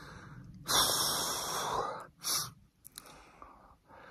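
A man breathing heavily close to the microphone: one long breath lasting about a second, then a short one.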